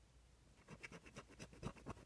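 Faint, quick strokes of a coin scraping the coating off a scratch-off lottery ticket, starting about half a second in.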